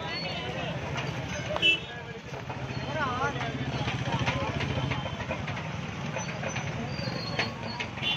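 Busy street ambience: many voices of a crowd mixed with motorbike and vehicle engines. A steady low engine hum sits under the middle, and a short loud sound with a high tone comes about two seconds in.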